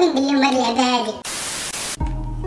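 A man's voice for about the first second, then a burst of TV-static white noise lasting under a second that cuts off suddenly: a static transition sound effect at a video cut.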